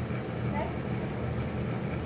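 A steady low mechanical hum, with a brief spoken "okay" about half a second in.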